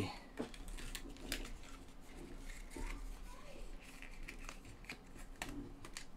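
Faint handling noise: scattered small clicks and light rustling as a tag is removed from a new cordless drill.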